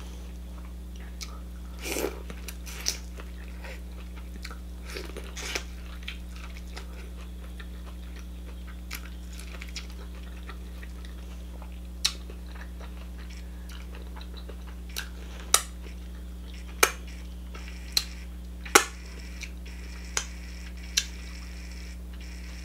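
Close-miked chewing of buttered corn on the cob, with soft crunchy bites in the first few seconds, then a scattering of short sharp mouth clicks. A steady low electrical hum runs underneath.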